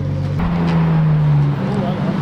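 A car engine running at a steady low note. About half a second in, the revs rise slightly and hold, then drop back shortly before the end.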